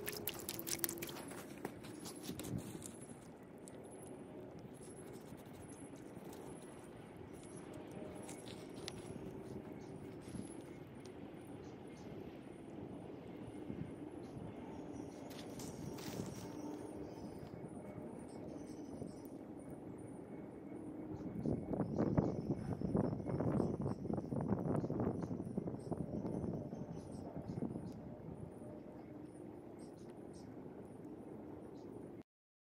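Water sloshing and splashing as a hand stirs a small rock-lined seep-well pool, stopping within the first couple of seconds. After that comes faint outdoor background, with a louder stretch of scratchy, crackly noise lasting a few seconds about three-quarters of the way through.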